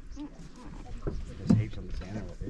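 Low, indistinct voices over a faint steady hum, with one sharp knock about one and a half seconds in.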